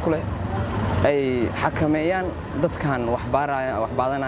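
A man talking, with a vehicle engine running steadily underneath.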